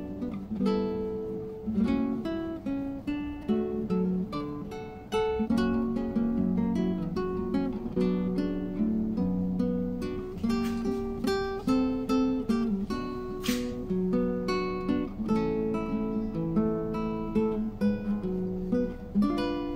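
Background music: acoustic guitar playing a steady run of plucked and strummed notes.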